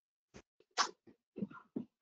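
A few faint, short noises on a remote participant's call microphone just before he speaks: a small click, then a brief breath-like puff and a few small mouth sounds.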